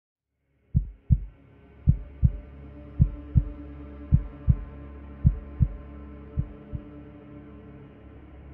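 Heartbeat sound effect: six double thumps, about one beat a second, the last two fainter, over a low steady drone.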